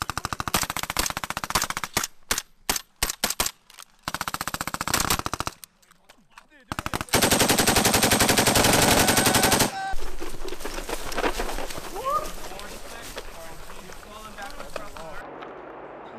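Automatic gunfire from assault rifles and a belt-fed machine gun: several short bursts in the first five or so seconds, then one long, unbroken burst of about three seconds near the middle. After it stops the shots give way to a lower, lingering noisy rumble.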